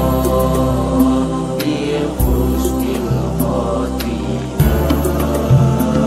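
Sholawat, Islamic devotional music: chanted vocals over sustained bass notes that change every couple of seconds, with regular percussion strikes.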